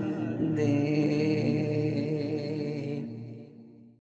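Wordless vocal drone ending an a cappella naat: a steady held chord of voices with echo that fades out over the last second.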